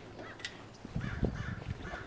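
A bird calling outdoors with short, repeated arched notes, a few a second, with some low thumps about a second in.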